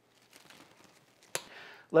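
Faint crinkling of plastic wrap stretched over a stainless mixing bowl as the bowl is handled, followed by a single sharp click about a second and a half in and a brief faint hiss.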